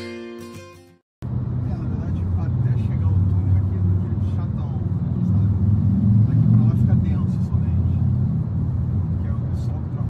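Steady low road and engine rumble heard from inside a car cabin while the car drives through a tunnel. Strummed guitar music ends about a second in, just before the rumble starts.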